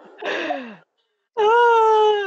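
A woman's voice: a short breathy sigh falling in pitch, then, about a second and a half in, a long, held, high-pitched vocal wail that runs into speech.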